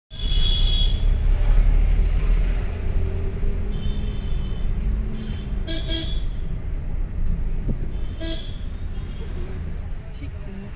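Low engine and road rumble heard from inside a car in dense city traffic, heaviest in the first half. Over it, vehicle horns toot several times: once at the start, a longer blast about four seconds in, a quick double toot near six seconds and another a little after eight seconds.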